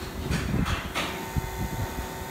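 Handling noise from turning out the valve knob of an AC hose coupler on a service port: a few light clicks and scrapes over a low rumble.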